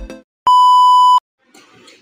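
Electronic intro music cuts off, then a single steady electronic beep sounds for under a second, one flat high tone that stops abruptly.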